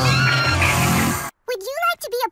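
Cartoon soundtrack: music with the cartoon ponies' voices crying out, cut off suddenly about a second and a quarter in. After a short silence a cartoon voice whinnies, its pitch swooping up and down.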